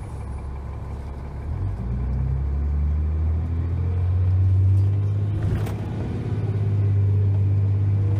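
A 2001 New Flyer D30LF transit bus's Cummins ISC diesel engine and Allison automatic transmission, heard from inside the bus as it pulls ahead: the low rumble swells after the first second or two and its pitch climbs steadily. A little past halfway there is a brief knock and a short dip in level, then the pitch rises again.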